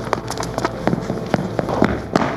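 Quick, uneven footfalls of a girl running on a studio floor: sharp taps several times a second, played through a hall's loudspeakers.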